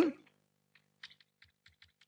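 The end of a spoken word, then chalk tapping and scratching on a blackboard as capital letters are written: a faint run of short ticks, about five or six a second, starting about a second in.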